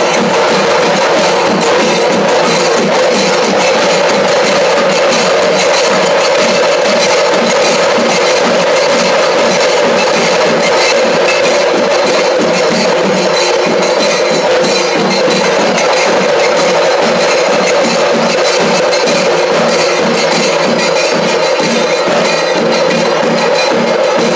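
Loud traditional Kerala ritual percussion, drums with metal hand cymbals, playing a fast, even beat at a steady loudness.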